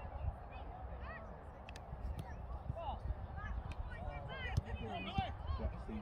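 Distant shouts and calls of young footballers across an outdoor pitch, short high-pitched cries scattered through, over a low rumble of wind on the microphone.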